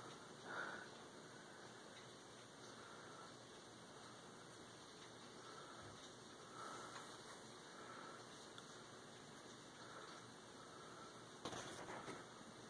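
Near silence: faint room tone and recording hiss.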